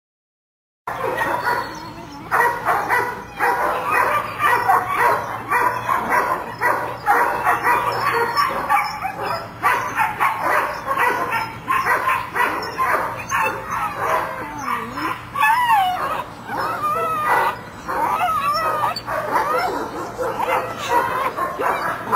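German Shepherd puppies barking and yipping in rapid, excited succession as they tug on a rag toy, starting about a second in, with high sliding whines mixed in around the middle and near the end.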